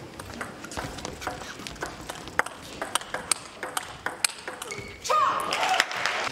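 Table tennis rally: the plastic ball clicking off rubber-faced bats and bouncing on the table, a quick uneven run of sharp ticks a few per second. The rally ends about five seconds in, followed by a louder burst of noise with a short cry.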